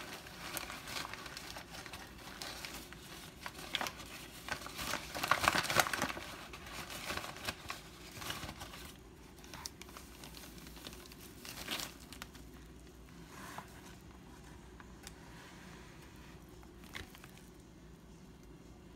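Plastic bag of all-purpose flour crinkling and rustling as it is handled, in irregular bursts. The bursts are loudest about five to six seconds in and come sparser and quieter later.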